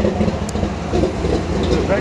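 Background noise of a busy street: a steady low rumble with distant voices, and one short sharp click about half a second in.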